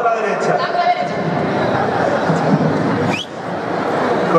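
Chatter of several voices at once, children and adults talking over a steady background of crowd noise, with a brief rising high-pitched glide about three seconds in.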